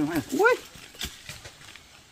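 A short rising vocal call near the start, then a single knock of a long-handled digging tool striking the ground about a second in.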